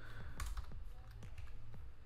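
Computer keyboard typing: a few light, scattered keystroke clicks as code is entered in an editor.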